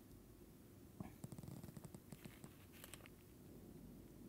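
Near silence with faint room tone, broken about a second in by a quick run of small clicks from a computer mouse, and a few more clicks near the end.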